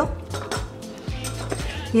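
Wooden spoon knocking and scraping against a glass jar as wet kefir-soaked oats are spooned in, a few light knocks over soft background music.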